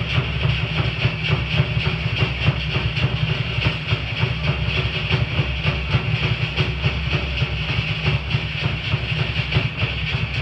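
Fast, steady drumming: a rapid, driving beat of many strokes a second, the percussion that accompanies a Polynesian fire knife dance.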